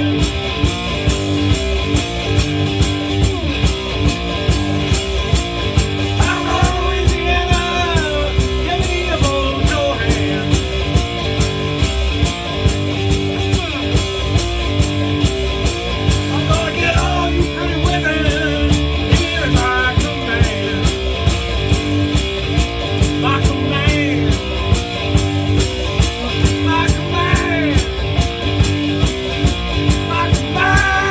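Three-string fretless cigar box guitar played amplified, with gliding slides in pitch, in a heavy blues groove over a kick drum and hi-hat keeping a steady beat.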